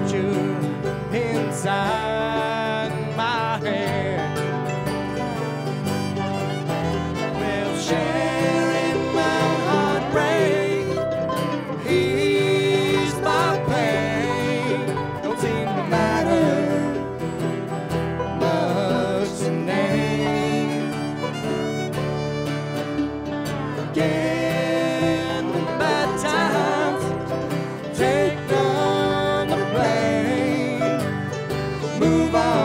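Bluegrass string band playing an instrumental break between verses, with no singing. Fiddle and dobro carry sliding lead lines over strummed acoustic guitar, mandolin and upright bass.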